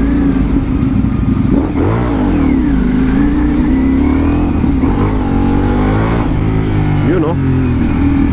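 Ducati Multistrada V4 Pikes Peak's V4 engine running at low speed as the bike pulls away from a stop in traffic, its pitch dipping and rising about two seconds in and climbing again a couple of seconds later.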